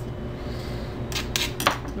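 A few sharp clicks and taps of a kitchen utensil against a cutting board while seeds are scraped out of a green chile, bunched in the second half, over a steady low background hum.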